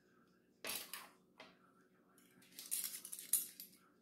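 A small glass jar of pepper jelly being handled and opened at the table: a couple of sharp clinks, then a stretch of scraping and clicking as the lid is worked loose.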